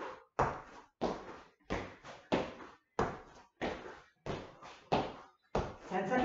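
Feet landing on the floor again and again as a person jumps both feet forward and back from a plank: a series of thuds, about one and a half a second.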